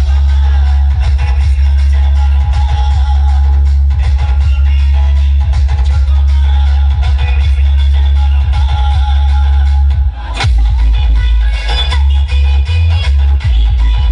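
Dance music played very loud through a large outdoor DJ sound system, dominated by a heavy, steady bass. About ten seconds in, the music briefly drops away, then the bass comes back in separate pulses.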